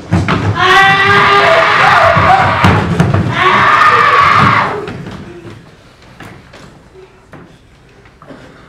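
Loud, long screaming in two stretches, with thuds under it, cutting off about four and a half seconds in; after that only faint knocks.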